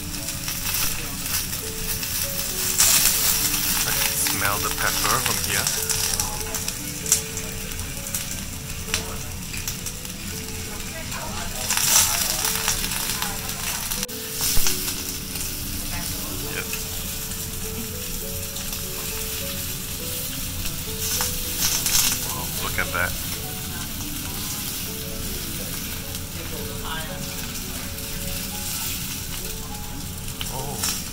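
Kobe beef sizzling on a hot teppanyaki griddle, a steady hiss that swells louder a few times as the meat is moved. Now and then the steel spatula and knife click against the plate.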